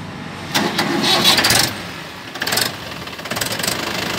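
Mahindra 585 DI tractor's four-cylinder, 2979 cc diesel engine idling, with a few louder noisy stretches over the running engine.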